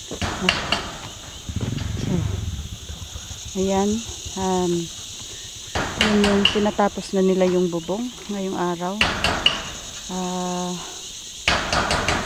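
Steady high-pitched drone of insects, with a few sharp knocks of hammering on the building site and men's voices talking at times.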